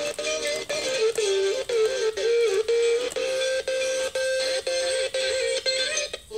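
Music played through a television speaker: one ornamented melody line with sliding notes over regular percussion strokes.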